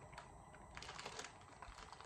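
Faint, irregular small clicks and mouth noises of people chewing sugar-coated gummy candy.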